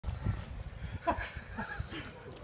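Gulls fighting, with short calls about a second in and again near the end, over low bumping noise.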